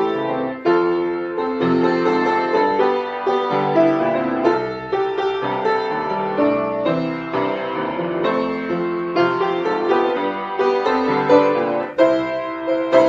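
Upright piano played with both hands: a pop song arrangement with a melody over continuous chords, notes struck in a steady flow.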